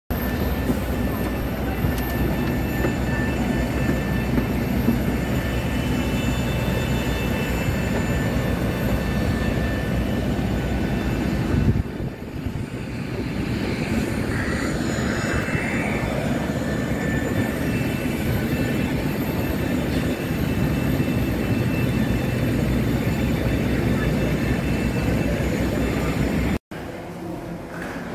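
Steady jet aircraft noise on an airport apron: a continuous low rumble and hiss from parked airliners, with a brief dip about twelve seconds in.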